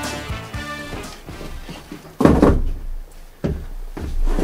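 Background music fading out in the first second, then two dull thumps a little over a second apart as a wicker armchair is set down on a wooden deck and sat in.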